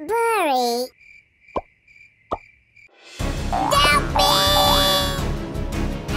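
Cartoon sound effects: a short squeaky cartoon voice with a wavering pitch, then two short plops. Bouncy children's background music starts about three seconds in.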